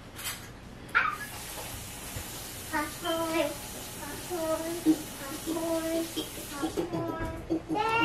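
A baby babbling in a run of short, level-pitched calls, with a steady hiss in the background from about a second in until near the end.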